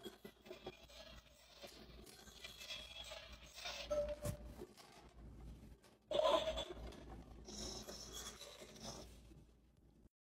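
Faint plastic handling noises from a toy vending machine: small clicks and scrapes, with a louder short rattle about six seconds in as a hand reaches into the delivery tray.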